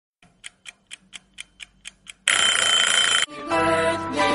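Clock ticking, about four ticks a second, then an alarm-clock bell ringing loudly for about a second. Plucked-string music starts just after the ringing stops.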